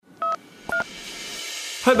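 Two short electronic beeps from a smartphone being tapped, about half a second apart, the second slightly higher. A hiss then swells up over about a second, and a voice comes in near the end.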